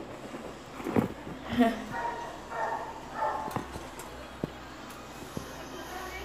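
Muffled voices in the background, with a few sharp clicks in the second half.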